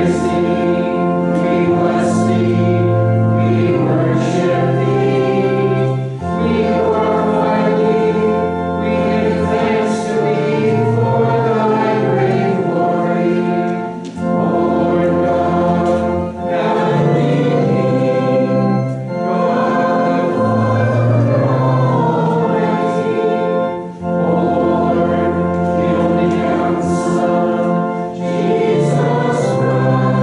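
Congregation singing a liturgical chant or hymn with organ accompaniment, in sustained phrases of a few seconds broken by short pauses for breath.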